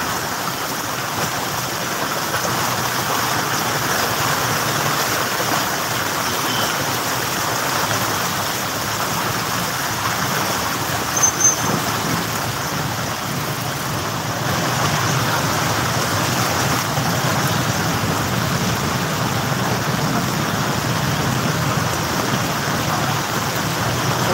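Road traffic driving through floodwater on a city street: a steady wash of splashing, rushing water mixed with engine and tyre noise. A brief high squeak comes about eleven seconds in, and a lower engine rumble grows louder from about fifteen seconds on.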